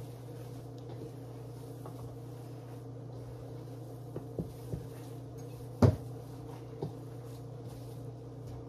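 A gloved hand mixes raw ground meat in a stainless steel bowl: a few soft knocks and one sharper knock of hand or meat against the bowl, about six seconds in. A steady low electrical hum runs underneath.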